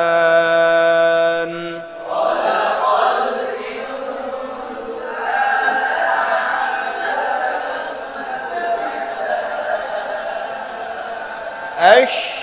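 A man's solo Quran recitation holds a long steady note that ends about a second and a half in. It is followed by several voices chanting the recitation together in unison, a blurred chorus that runs on until a single voice returns at the end.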